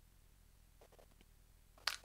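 Near silence with room tone, broken by a few faint short clicks about a second in and a brief breath just before the end.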